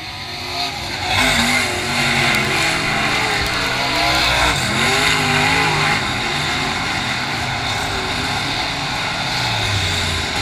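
Several dirt-track race car engines running hard as a pack comes down the straightaway, their engine notes overlapping and wavering. The sound grows louder about a second in and stays loud.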